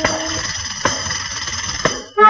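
A quiet, thin stretch in a 1970 Punjabi film song played from a 45 rpm record: metallic jingling with three sharp strikes about a second apart, between louder passages of the full band.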